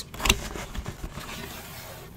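A cardboard box lid being lifted and folded open by hand: a soft knock in the first half-second, then faint scraping and rubbing of cardboard.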